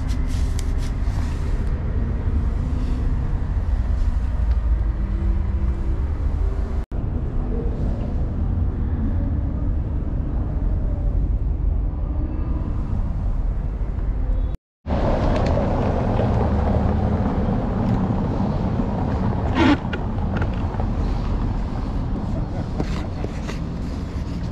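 Steady low rumble of street traffic, cut off briefly twice, with a short sharp knock a little past the middle.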